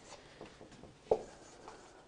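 Marker pen writing on a whiteboard, faint strokes, with one short, louder sound about a second in.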